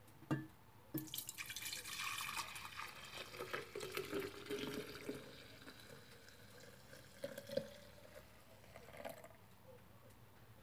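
Warm milk poured from a metal pot into a glass pitcher: a splashing stream starts about a second in and thins out after about five seconds, followed by a few last drips.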